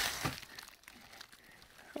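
Faint rustling of gloved hands handling a wooden marten box trap, fading to near silence.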